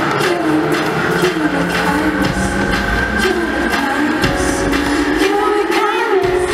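Live pop song played loud over an arena PA, with a steady beat and a female vocal melody.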